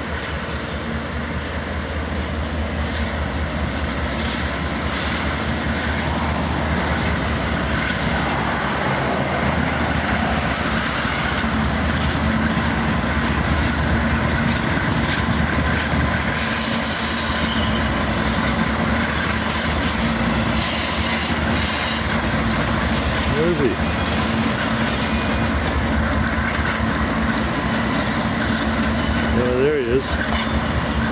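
A long freight train rolling across a steel railway bridge: a steady rumble of locomotives and wagons with a constant low engine drone.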